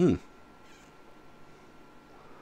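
A short vocal sound right at the start, its pitch dropping steeply, followed by faint background hum.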